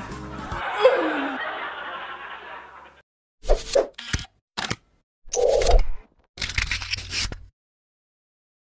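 Background music fading out over about three seconds. After a short silence comes a string of short, sudden sound effects, about five bursts over four seconds, timed to an animated channel logo.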